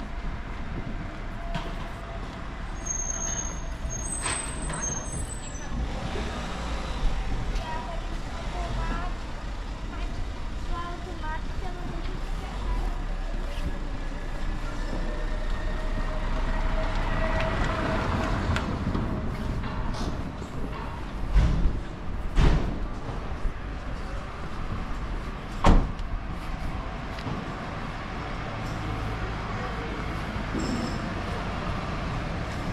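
Street ambience on a cobbled pedestrian lane: a motor vehicle running at low speed, voices of passers-by, and three sharp thumps in the last third.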